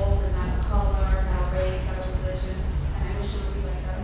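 Harmonica played with cupped hands: a slow tune of long held notes that change pitch every second or so.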